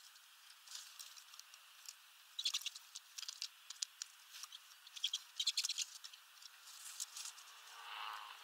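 Small bird pecking and rummaging in sunflower seeds and husks on a feeder tray: bursts of quick dry clicks and rustles, several clusters a second or two apart.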